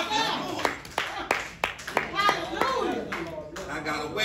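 Scattered, irregular hand claps from a church congregation, mixed with voices.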